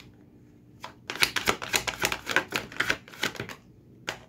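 A deck of tarot cards shuffled by hand: a single click, then a rapid run of card clicks lasting a couple of seconds.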